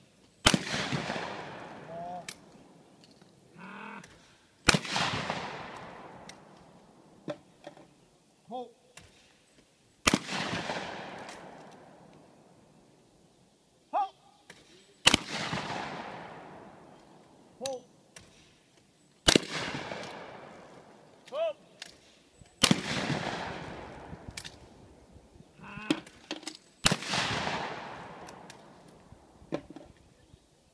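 Trap shooting with shotguns: a shooter calls "pull" and a shot follows about a second later, seven shots in all, each with a long echo fading away.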